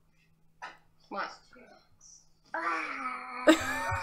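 A young child's voice gives a few short sounds, then from about halfway through a long, held "ohhh" wail on one pitch. A noisy burst joins it near the end.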